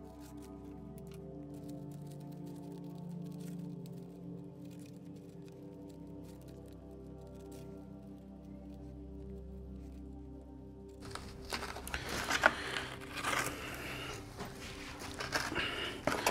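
Quiet ambient background music with held tones, which stops about eleven seconds in. It gives way to close handling noises: scrapes and knocks of plastic nursery pots being shifted on a plastic tray.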